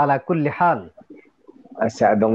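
A man speaking, with a short pause about a second in before he talks again.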